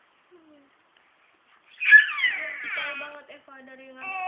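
A baby's high-pitched squealing cry that starts suddenly about two seconds in and falls in pitch over about a second, trailing off into softer fussing sounds.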